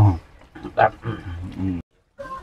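A man's voice: a loud exclamation, then short vocal sounds and a drawn-out hum-like vocalization, which cuts off suddenly near the end.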